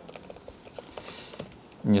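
Typing on a computer keyboard: a run of quick, light, irregular key clicks.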